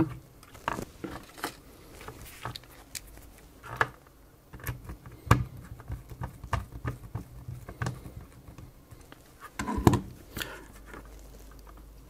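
Small hand screwdriver driving a screw that fastens the ZX81's circuit board into its plastic case: irregular light clicks and scrapes of metal on plastic, with a louder knock about ten seconds in.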